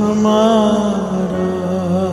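Devotional chanting with music: a voice holds long, slowly wavering notes over a steady low drone.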